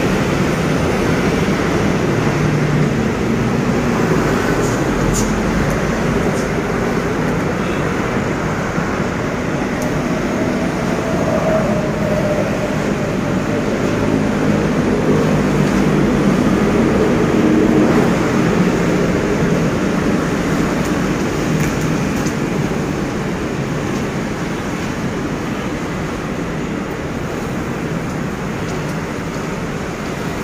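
A steady mix of road traffic noise and the drone of a formation of helicopters flying overhead. It grows a little louder toward the middle and fades slightly near the end.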